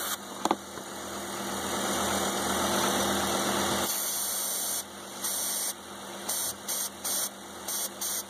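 Aerosol brake parts cleaner spraying around an idling car engine's intake manifold gasket: one long hiss, then several short squirts, with a click about half a second in. The engine's idle stays steady and does not change, a sign of no intake leak where it is sprayed.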